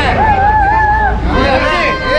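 Crowd of people talking and calling out over one another, with one voice holding a long wavering call in about the first second. A low rumble runs underneath.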